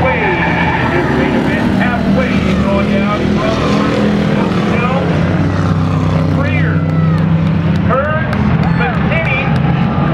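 Race cars running laps on an oval short track, the engines droning steadily with rises and falls in pitch as they rev through the turns.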